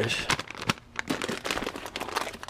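Clear plastic bag crinkling and rustling in rapid irregular crackles as a new nitro RC engine sealed inside it is pulled out of its cardboard box.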